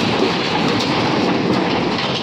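JCB backhoe loader running while its bucket comes down on a wrecked sheet-metal stall, with a steady clatter of metal and debris over the engine.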